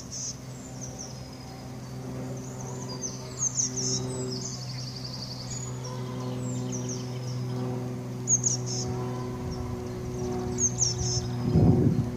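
Small songbirds chirping and trilling in short, repeated phrases, over a steady low hum. A brief louder, rough sound comes just before the end.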